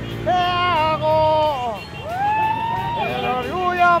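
A man's voice holding long, drawn-out calls that end in falling glides, with a rising call about halfway through. Under the calls runs the low rumble of motorcycle engines idling in a crowd.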